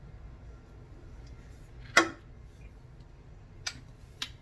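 A man drinking down a can of beer, with quiet swallowing, one short sharp sound about halfway through and a small click near the end.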